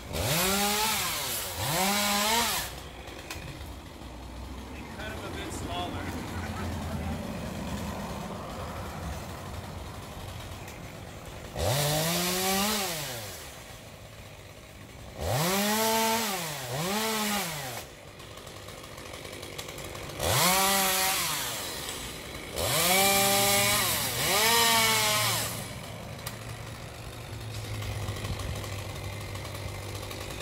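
Two-stroke chainsaw cutting up felled tree limbs. It is revved up and back down about eight times, mostly in pairs of quick rises and falls in pitch, and drops to a low idle in between.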